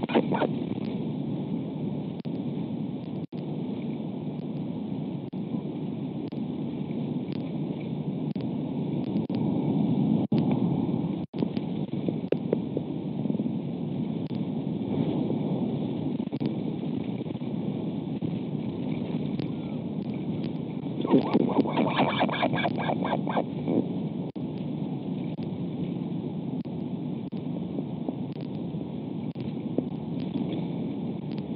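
Steady wind rushing over an outdoor nest-camera microphone, with a few seconds of fast rattling from an albatross nest about two-thirds of the way through.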